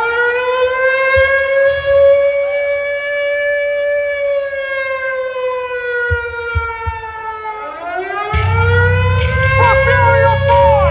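Air-raid siren wail winding up, holding its pitch, then sinking slowly over several seconds before winding up again near the end. A low rumble comes in about eight seconds in.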